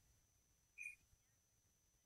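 Near silence, with one faint brief sound just under a second in.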